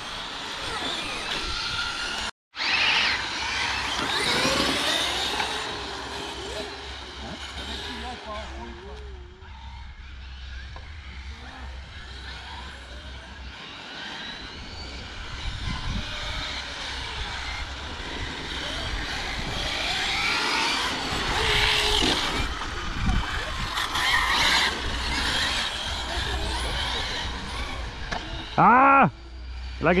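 Electric radio-controlled cars running at a distance: brushless motors whining, rising and falling in pitch as the cars speed up and slow down, over a steady hiss of tyres on tarmac.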